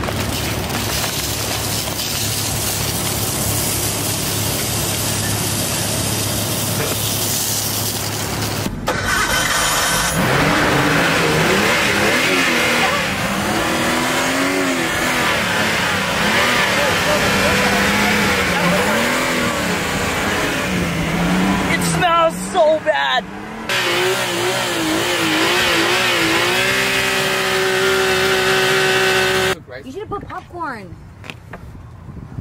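Nissan R32 Skyline's inline-six engine running with rice and soy sauce poured into its oil: a steady hum at first, then after a short break about nine seconds in it is revved up and down again and again, and near the end it is held at a steady high rev before cutting off suddenly.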